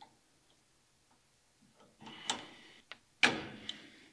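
Quiet at first, then a few light metallic clicks and ticks and one louder sharp clack a little past three seconds in. These are hands and tools working a tie rod end into the steering knuckle on the car's front suspension.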